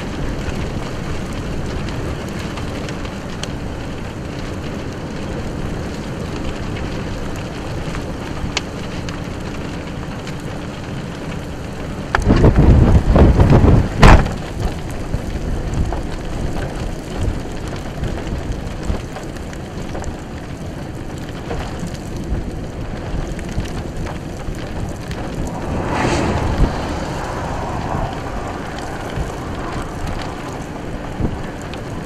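Steady wind and rain noise in a tornadic thunderstorm, with wind on the microphone. About twelve seconds in, a loud rush of wind lasts about two seconds and ends in a single sharp crack; a milder gust swells up later on.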